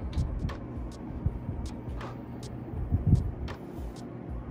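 Handling noise of a USB microphone and its plastic shock mount being turned and fitted together by hand: scattered clicks and knocks with low thumps, the loudest thump about three seconds in.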